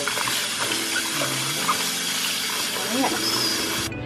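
Tap water running into a bowl of chopped bell peppers as a hand rinses them, a steady rush that cuts off suddenly near the end.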